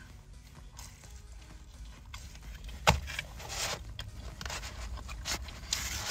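A slice of pizza being worked loose from a cardboard pizza box: quiet scraping and rustling of the box, with one sharp knock about three seconds in and a few fainter knocks.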